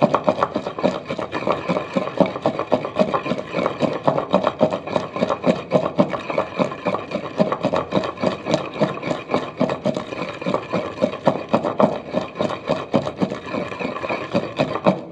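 Wooden pestle pounding and grinding wet chopped green chillies, garlic and coriander in a clay kunda mortar: a fast, steady beat of dull knocks, about five strokes a second.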